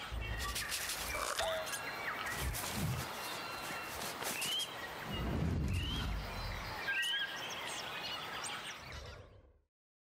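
Nature sound design for an animated ident: a night-time bush ambience with bird chirps and three short rising whistled calls in the middle, over a few soft low thuds, fading out to silence near the end.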